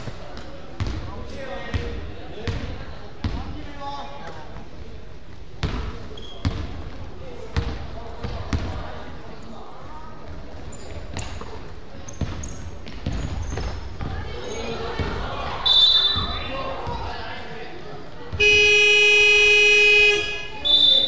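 Basketball bouncing on a gym floor, with voices in the background and a short referee's whistle blast about 16 s in. Near the end the scoreboard buzzer sounds loudly as one steady tone for about a second and a half.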